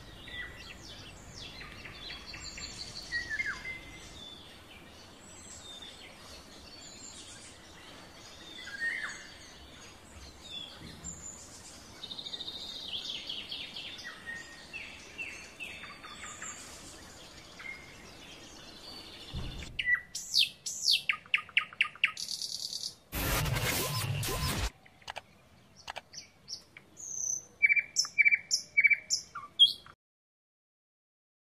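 Birds chirping and singing, many short overlapping calls over a faint background hiss. About two-thirds of the way in, the background drops out and a rapid trill follows, then a loud noisy burst lasting about a second and a half. Clear repeated chirps come near the end.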